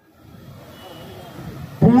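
A pause in a man's speech over a microphone and loudspeakers, filled by a low outdoor background rumble with a faint short high tone about a second in. He starts speaking again near the end.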